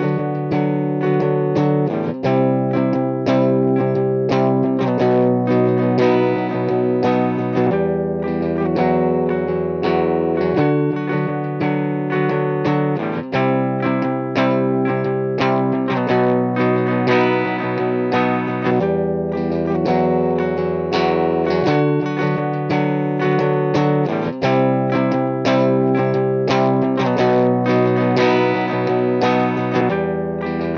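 Electric guitar with light overdrive, played through the UAFX Lion '68 Super Lead amp-emulator pedal into the UAFX OX Stomp speaker emulator. It plays a repeating chord progression with ringing notes.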